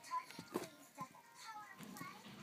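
Faint background voices, with a few soft clicks in the first second.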